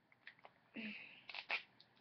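Sticker being peeled off a hockey helmet's plastic shell: a few faint short rips and scrapes, the sharpest about a second and a half in.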